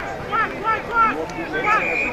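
Several voices shouting short calls across the ground, overlapping one another.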